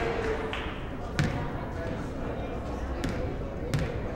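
A basketball bouncing twice on a hardwood gym floor, about a second in and again near the end, over a murmur of crowd voices.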